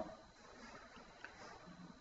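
Near silence: faint room tone in a pause between words, with one faint tick a little past the middle.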